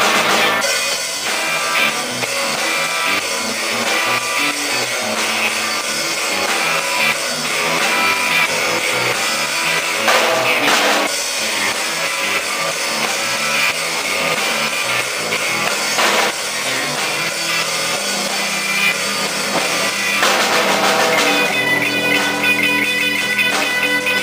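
Instrumental rock played live by a trio on electric guitar, bass guitar and drum kit, with two sharp accents about ten and sixteen seconds in and more held, ringing notes near the end.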